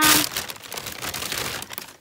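Thin plastic shopping bags crinkling and rustling as hands rummage through them, loudest at the start.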